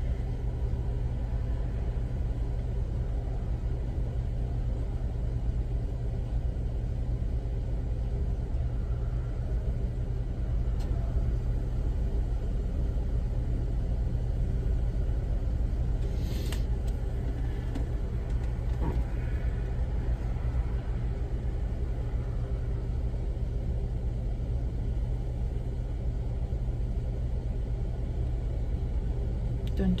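Car engine idling while stopped, a steady low rumble heard from inside the cabin, with a single faint click about halfway through.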